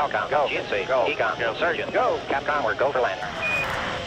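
Intro soundtrack: a voice talking for about three seconds, then a rushing noise for the last second or so, which cuts off sharply.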